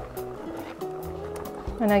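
Background music with steady held notes, and a brief knock near the end.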